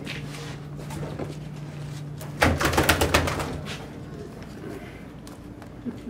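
A plastic weigh-in basket holding bass knocking and rattling, a quick run of sharp knocks under a second long about two and a half seconds in, over a steady low hum.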